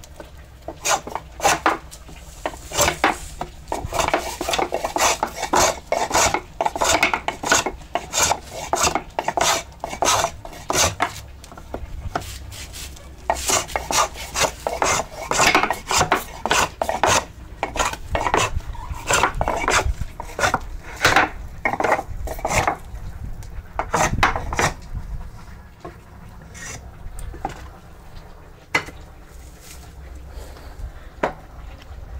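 Hand plane shaving a block of hardwood in repeated short rasping strokes, about two a second, thinning out near the end.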